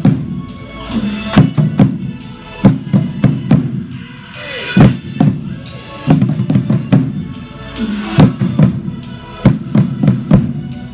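Percussion ensemble playing: heavy drum hits in a steady pulse over pitched mallet-keyboard notes.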